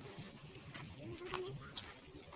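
Faint, indistinct voices in night-time surveillance footage, partly disguised by audio processing, with a short pitched voice sound about a second and a quarter in and scattered faint clicks.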